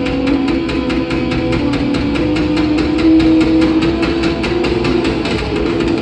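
Live rock band playing loud: distorted electric guitar holding chords over drums, with a steady cymbal beat of about five hits a second and no singing.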